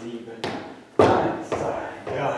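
Cowboy boots stepping on a hard tiled floor in a large hall: three sharp, echoing footfalls about half a second apart, the loudest about a second in.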